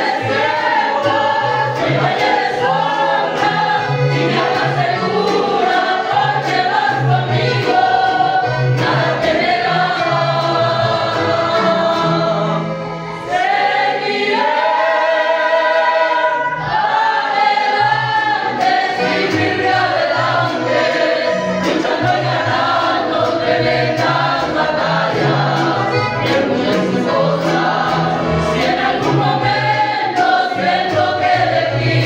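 Mixed choir of women and men singing a Spanish-language hymn together. A little under halfway through, the singing dips briefly, then a long chord is held before the singing moves on.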